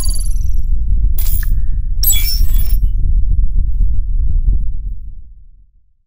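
Logo intro sound effect: a loud, deep bass rumble with sharp glitchy hits and chime-like ringing at the start, about a second in and again around two seconds in, fading out over the last second or so.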